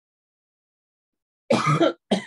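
Silence, then about a second and a half in a man gives a short, loud cough, clearing his throat.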